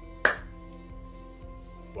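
Soft background music with sustained notes, and one sharp smack of hands about a quarter of a second in.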